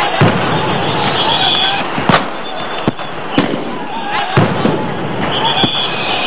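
Police weapons firing to disperse a crowd: about seven sharp bangs at uneven intervals, the loudest about two seconds in, over the shouting of a large crowd.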